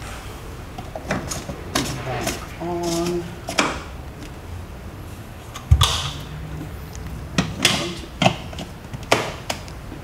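A string of sharp plastic clicks and knocks as the oil filler cap on a Porsche 981 Cayman S's engine cover is put back and screwed shut after the oil fill. The loudest knock comes about six seconds in, and a short voiced hum sounds around three seconds in.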